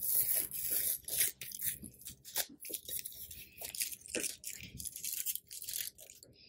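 Heat-resistant sublimation tape being peeled off a freshly pressed ceramic mug: a run of irregular crackling rips.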